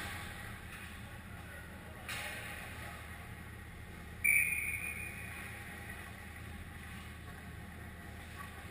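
Ice hockey rink sound: skate blades scraping and cutting the ice, with a sudden sharp scrape about four seconds in that fades over a second, over the steady low hum of the arena.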